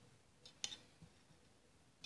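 Near silence, broken by a short clink of a metal spoon against a glass bowl about half a second in and a fainter tap about a second in.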